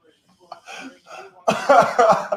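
Faint low voices, then a man coughing loudly about a second and a half in.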